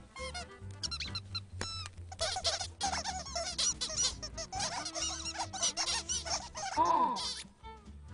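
A flock of cartoon birds chattering in quick, high squeaky chirps over light background music, with a louder squawk that falls in pitch near the end.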